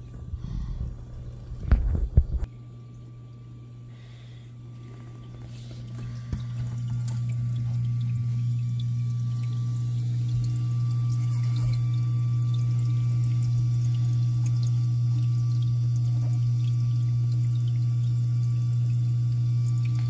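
Running water with a steady low hum, as from a paludarium's water pump and water feature, growing louder about six seconds in and then holding steady. A couple of sharp knocks come about two seconds in.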